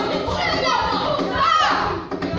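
Many children's voices shouting and chattering at once, with a high rising shout about three-quarters of the way through.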